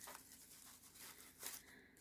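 Near silence, with faint rustling of paper flowers and cardstock being handled; one slightly louder rustle about one and a half seconds in.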